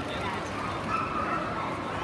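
A dog barking and whining over the steady din of voices in a crowded hall, with a drawn-out whining call about a second in.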